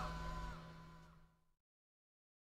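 The last notes of a heavy rock song dying away: a held low note and a few high ringing notes fade out and are gone within about a second.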